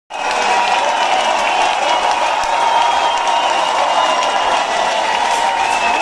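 Rock concert audience applauding and cheering in a club hall, a steady dense crowd noise.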